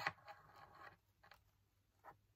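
Bundle of thin wooden skewers with paper butterflies glued on, handled in the hand: a sharp click as they knock together, then about a second of faint scraping and rustling, and a light tick a little later.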